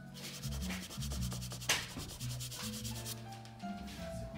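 Pastel stick rubbed against drawing paper in quick back-and-forth strokes, a dry scratchy rasp of several strokes a second, with one louder stroke a little under two seconds in.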